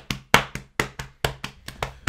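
Hands drumming on a desk as a drumroll: a quick, uneven run of about a dozen knocks that fade toward the end.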